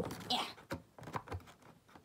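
Fingers working at the end flap of a cardboard model box, giving a scattering of light clicks and taps as the flap resists opening.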